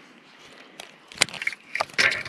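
About a second of quiet, then several sharp clicks and knocks as fishing tackle is handled to lift a small chain pickerel to the boat.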